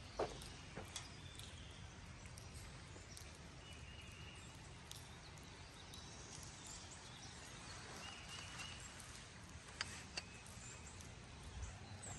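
Faint outdoor river-valley ambience: a low, steady rumble with a few faint, short, high bird calls and a couple of sharp clicks, one just after the start and one near the end.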